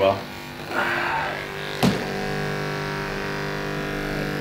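A percussive massage gun buzzes briefly about a second in and stops with a sharp click. Background music with sustained guitar chords carries on under it.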